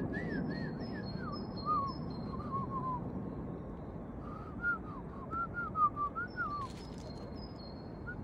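Birds calling: two phrases of short, arching whistled notes, with thin high-pitched calls above them and a single sharp click late on.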